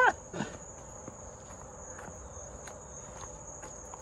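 A steady high-pitched drone of insects singing in the surrounding trees, with a few faint footsteps on the driveway.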